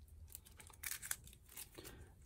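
Playing cards being picked up and handled over a tabletop: faint rustling and a few light clicks, most of them about a second in.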